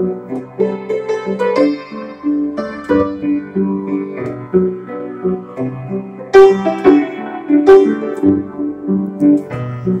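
1940s upright piano, its front panel off, being played: a steady run of struck notes and chords, with sharper, louder notes from about six seconds in. The piano is out of tune.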